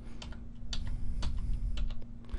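Computer keyboard arrow keys pressed repeatedly, a run of separate key clicks moving the text cursor, over a faint steady hum.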